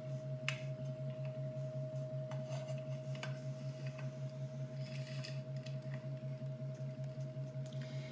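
A steady low electrical hum with a faint high tone over it, under a few light clicks and knocks and a brief rustle around five seconds in, as a coffee grinder and a foil bag are handled on a kitchen counter.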